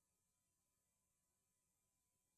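Near silence: only the recording's faint, steady electronic noise floor.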